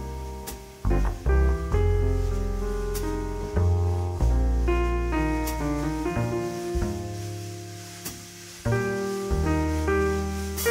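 Steinway grand piano playing a slow jazz ballad: sustained chords, a new one every second or so, over deep low notes.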